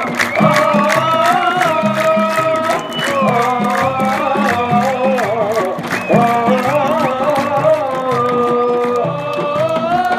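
A crowd of football supporters singing a chant together to a steady, repeating beat of hand-held frame drums, with held, ornamented sung notes.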